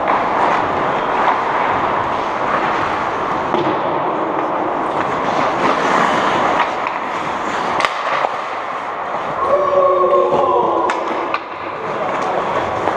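Ice hockey skates scraping and carving on the rink ice, with sharp clacks of sticks and puck at several points. A brief shout rises over it about two-thirds of the way through.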